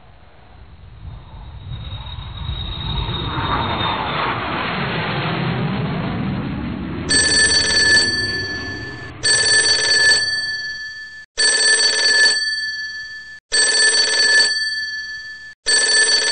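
A rising jet-airliner roar swells over the first half. About halfway in, a digital alarm clock starts beeping in repeated electronic bursts about every two seconds, and these become the loudest sound.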